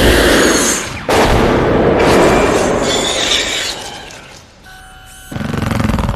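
Film sound effects of a xenomorph alien screeching, loud and harsh, cut off sharply about a second in and followed by a second long screech that fades away. Near the end come a few faint steady electronic tones, then a deep blast from the Predator's shoulder plasma cannon.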